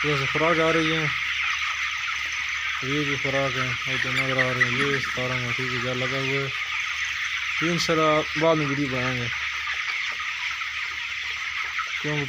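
A large flock of young broiler chickens peeping and chirping all at once, a dense, unbroken chatter.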